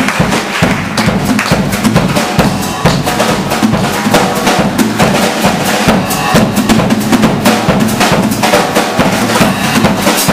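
Live blues band playing, with the drum kit out front: kick drum, snare and cymbal strokes in a steady beat over electric guitar and bass.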